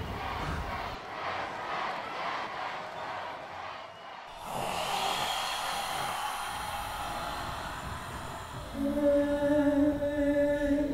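Faint, indistinct background sound, then, about nine seconds in, a voice begins holding one steady low note.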